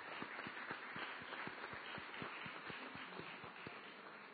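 Audience applauding, a dense patter of claps that thins out and fades toward the end.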